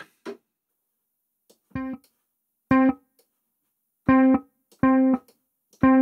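Kontakt's 'Classic Bass' sampled electric bass played as five short, separate notes on the same pitch, each sounding briefly and stopping. The first note is quieter than the rest.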